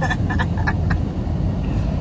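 Steady low rumble of a moving car heard from inside the cabin, the engine and road noise of the ride, with a few brief voice sounds in the first half-second or so.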